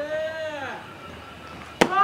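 A baseball bat hitting a pitched ball, one sharp crack near the end. A shout comes before it.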